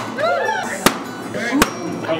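Three sharp cracks, about a second apart, heard over excited voices.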